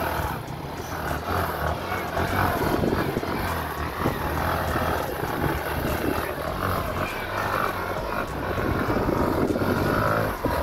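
Yamaha R15 sport motorcycle's engine running under throttle, its note wavering up and down, as the rear wheel churns in soft wet sand with the bike stuck.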